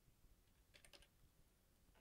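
Near silence with room tone and a few faint clicks just under a second in.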